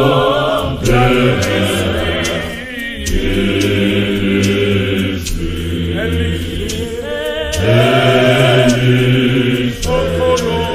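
Church choir singing a gospel hymn in sustained multi-part harmony, the phrases breaking and starting again every two to three seconds.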